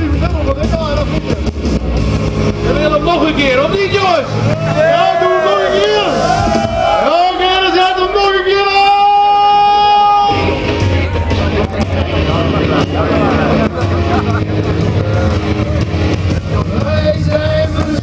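Men's voices singing and calling through a PA over a loud pop song played on speakers, with one long held high note about halfway. A low steady rumble runs underneath.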